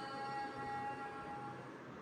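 Background music: a single held note that fades out about one and a half seconds in, leaving a faint hiss.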